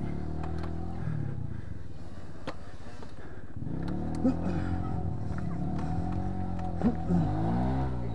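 Dirt bike engine revving up and down in several swells, working under load on a steep, muddy enduro climb, with a few short knocks.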